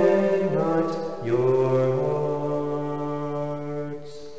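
A man's solo voice singing the responsorial psalm response a cappella, in a slow chant-like line of held notes. The pitch steps down about a second in, and the final note is held for about two seconds before it stops.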